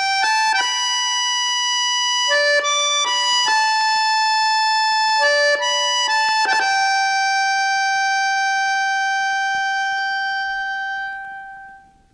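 Accordion playing a slow melody in held notes, ending on a long sustained note that fades away near the end.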